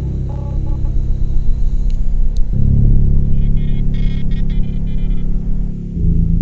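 Ambient drone music: dense, sustained low tones that shift to a new chord about two and a half seconds in, with faint flickering high tones in the middle.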